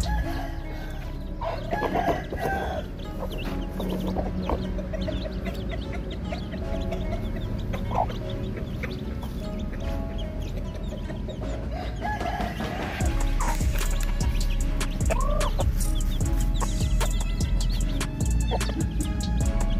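Chickens clucking, with a scatter of small chicks peeping through it.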